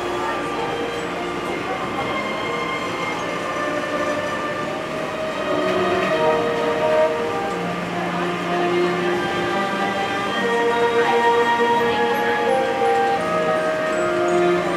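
Running noise inside a Disney Resort Line monorail car travelling between stations, a steady ride noise with held tones that shift in pitch every second or two, getting a little louder about halfway through.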